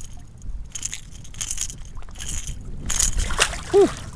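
Water splashing and sloshing at the surface in several short bursts beside the boat's hull as a redfish is unhooked and released, kicking as it swims off.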